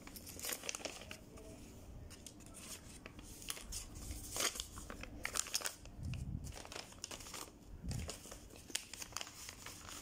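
Folded paper gift bags being handled: the paper crinkles and rustles in short, irregular scratches, loudest near the middle. There are two dull thumps in the second half.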